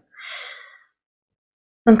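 A woman's short, soft audible breath between phrases, lasting under a second, followed by dead silence until she speaks again just before the end.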